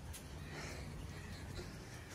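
Steady rain ambience: an even, faint hiss of light rain falling on the street and pavement, with a low rumble underneath.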